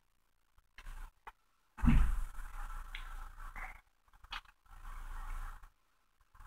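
A dollar bill's paper rustling and crinkling in short bursts as it is folded and pressed into a crease by hand, with a few small clicks and a soft thump about two seconds in.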